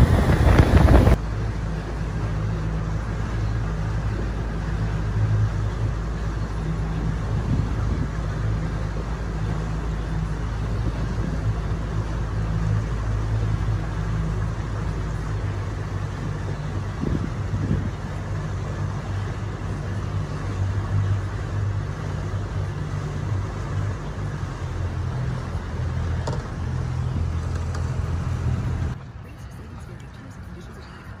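Motorboat at speed with a loud rush of wind and water spray that cuts off about a second in, then the boat's engine running slowly at low revs as a steady low hum. The hum stops abruptly near the end.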